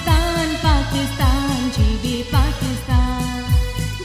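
A woman singing a South Asian pop song into a microphone with band accompaniment over a steady drum beat; her voice wavers in pitch.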